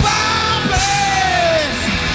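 Live rock band with electric guitars, bass and drums playing loudly, while the lead singer yells a long note into the microphone that slides down in pitch about a second in.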